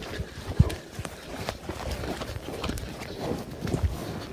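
Two yaks fighting head to head, with irregular dull thuds and scuffing of hooves and heavy bodies on the turf. The loudest thump comes about half a second in.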